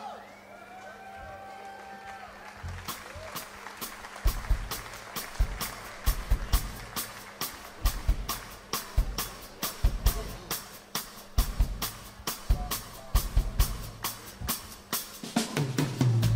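A live band's drum kit starts a groove about three seconds in: low bass-drum thumps under quick, evenly spaced sharp strikes, about four a second. Before that come a few brief held vocal-like tones.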